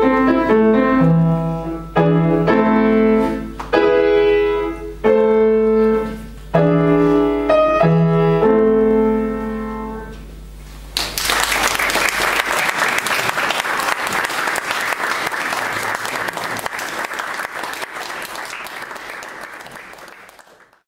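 Grand piano playing the closing chords of a piece: a series of held chords, the last one dying away about ten seconds in. About a second later an audience starts applauding, and the clapping slowly fades toward the end.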